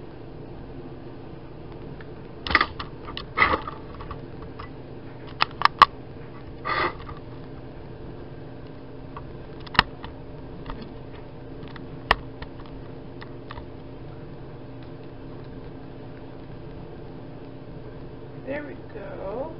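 Steady low mechanical hum under a scattering of sharp clicks and knocks, the loudest between about two and seven seconds in and a couple more near ten and twelve seconds, from the camera being handled and a stir stick working among plastic paint cups.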